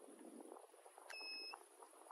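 A single electronic beep, one steady high tone lasting about half a second, a little past the middle, over faint scattered ticks.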